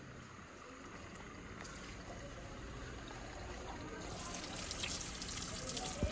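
Tap water running in a thin stream and splashing over hands, growing louder and splashier about four seconds in, as raw chicken is rinsed.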